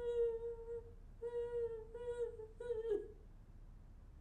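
A woman humming in short held notes at nearly one high pitch, four of them, the last dropping off about three seconds in.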